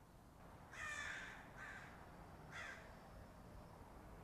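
Three faint, harsh bird calls like caws, the first the longest and loudest, about a second apart.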